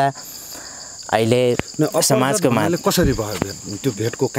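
Steady, high-pitched drone of insects in the vegetation, with a person speaking over it from about a second in.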